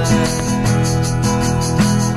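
Acoustic band playing an instrumental passage: strummed acoustic guitars with a tambourine shaken in a steady rhythm.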